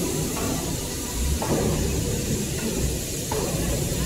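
Steady machinery noise in a paper-converting workshop: a continuous high hiss over a low rumble, with a few brief swells.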